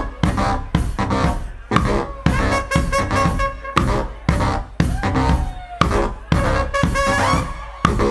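Background music with a steady drum beat, about two beats a second.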